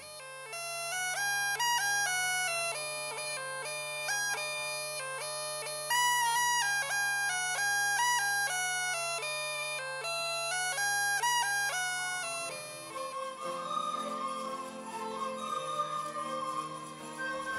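A bagpipe plays a quick melody over a steady drone. About twelve seconds in the drone stops, and a group of recorders with guitar and violin takes up the tune.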